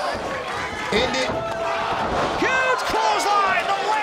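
Shouting voices over steady crowd noise from a live wrestling match, with a few sharp knocks.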